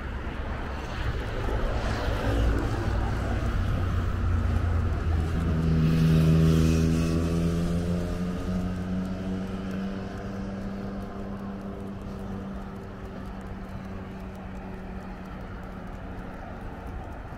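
Road traffic: a motor vehicle's engine grows louder to its closest point about six seconds in, then slowly fades, over a steady low rumble of traffic.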